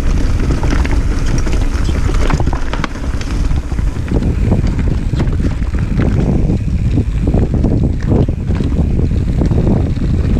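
Mountain bike descending a rocky dirt trail: wind rumbling on the camera's microphone, with irregular knocks and rattles from the tyres, chain and frame over stones and roots.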